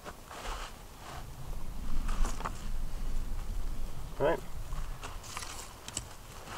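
Thin dry sticks rustling and knocking lightly as they are laid across a soil bed, with a low rumble for a couple of seconds in the middle.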